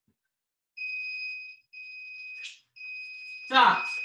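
Electronic interval timer beeping three times about a second apart, the third beep held longer, marking the end of a work interval. A short, loud vocal exclamation from a person cuts in over the last beep.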